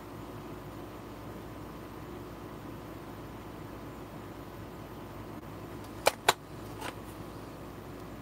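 Steady low room hum. About six seconds in come two sharp taps close together, then a softer one.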